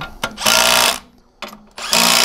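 Cordless impact wrench hammering as it drives a bolt into the water closet carrier's faceplate. It runs in two bursts of about half a second each, with a short blip between them, and the wrench is set to a low torque.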